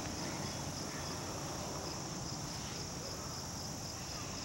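Steady high-pitched chorus of insects, typical of crickets, a continuous drone with no breaks.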